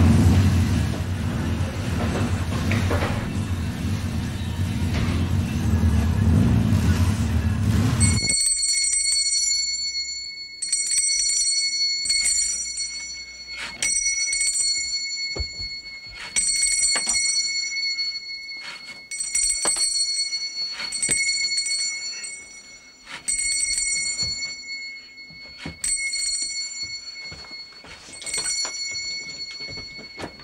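A city bus passing, a loud low rumble that stops suddenly about eight seconds in. Then a bicycle bell is rung again and again in short ringing bursts, about one every two seconds.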